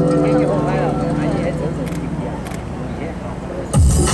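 Guzheng notes ringing out and fading away as the playing stops, then a sudden loud low thump near the end.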